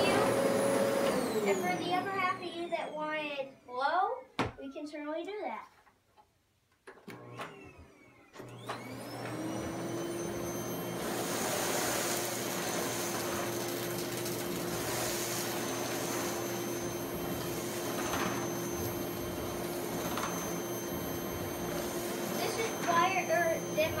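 Dirt Devil Easy Elite SD40010 canister vacuum running. Its motor winds down about a second in, and after a few near-quiet seconds with a couple of clicks it spins back up with a rising whine. From about eight seconds in it runs steadily at a lower pitch, drawing debris up off a rug through the floor nozzle.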